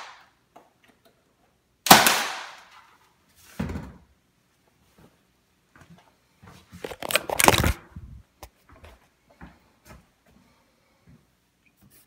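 Senco cordless 18-gauge finish nailer firing a nail: one sharp shot with a short ring-out about two seconds in, then a softer knock. A quick run of knocks and clatter comes a few seconds later.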